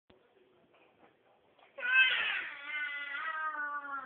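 A toddler's long, drawn-out cry that starts suddenly just before two seconds in, loudest at its onset, then holds on while slowly falling in pitch.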